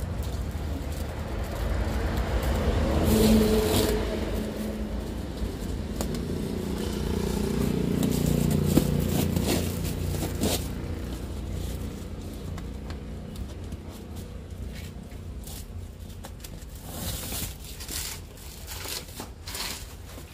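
Plastic packing strap and a taped cardboard package being handled: scraping, rustling and crackling, with a run of short sharp scrapes in the second half. A motor vehicle's engine swells and fades in the first half, loudest about three and eight seconds in.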